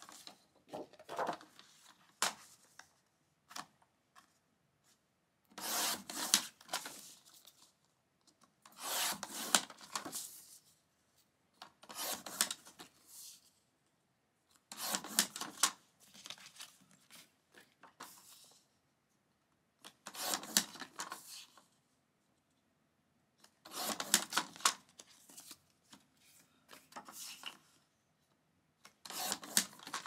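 Sliding paper trimmer cutting cardstock: the blade carriage rasps along the rail in strokes of about a second each, about ten times, with short quiet gaps between.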